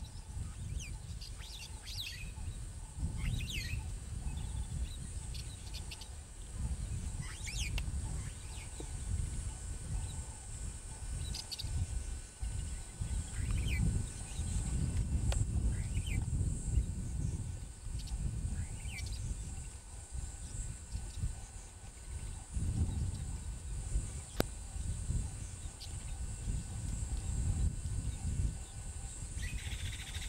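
Savanna field ambience: scattered short bird chirps, a few every couple of seconds, over an uneven low rumble and a steady high-pitched hiss.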